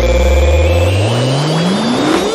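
Breakbeat dance track in a drumless breakdown: a held synth chord and deep bass stop about halfway through, while a synth sweep rises steadily in pitch from the low bass, a build-up riser.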